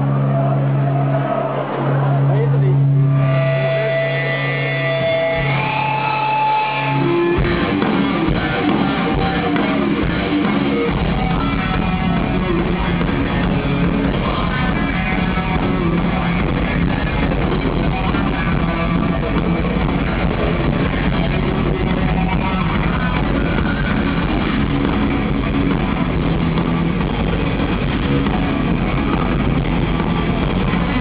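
Live thrash metal band: a distorted electric guitar opens with long held notes, then the full band with drums crashes in about seven seconds in, and the bass fills in a few seconds later.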